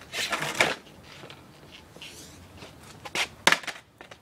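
Skateboard clattering on a concrete walkway during a failed trick attempt: a rattling clatter of wheels and deck at the start, then a few sharp clacks of the board hitting the ground about three and a half seconds in.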